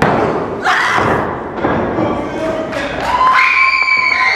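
Heavy thuds of bodies slamming onto a wrestling ring's canvas: one right at the start, another about two-thirds of a second later, and a lighter one shortly after. A long, held shout rises out of the crowd near the end.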